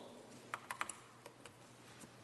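A handful of faint, quick clicks over quiet room tone: a cluster about half a second to a second in, then two more a little later.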